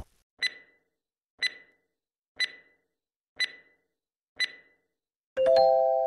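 Quiz countdown-timer sound effect: five short ticks, one a second, then a chime of three tones sounding together about a second before the end, marking the end of answer time as the answer appears.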